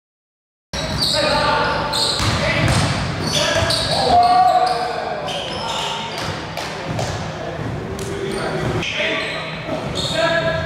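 Silent at first. About three-quarters of a second in, the sound of an indoor pickup basketball game starts suddenly: a basketball bouncing on a hardwood court and players' indistinct voices echoing in a large gym.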